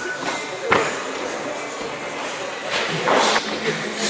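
A single thud under a second in, a person landing from a jump on a gym floor, with voices in a large echoing hall.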